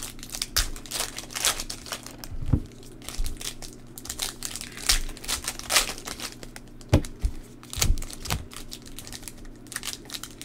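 Trading-card pack wrapper crinkling and tearing in irregular crackles as hands open the pack and handle the cards, with a few dull bumps among them.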